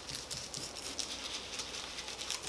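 Stencil brush dabbing paint through a plastic stencil onto a textured wall: a quick, irregular run of faint soft taps.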